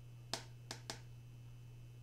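Three short, sharp clicks from a large oracle card being handled, the first loudest and the other two close together, over a steady low hum.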